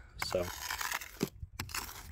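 Plastic ice scraper pushing a layer of snow and ice off a car windshield, a rough scraping crunch in two strokes with a short pause between. The glass beneath has been thawed by a space heater, so the layer slides off in loose chunks.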